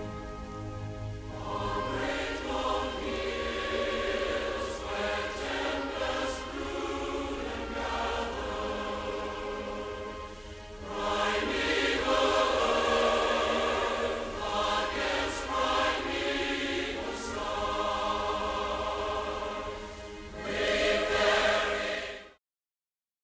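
Closing music with a choir singing in long held phrases, swelling louder about halfway through and again near the end.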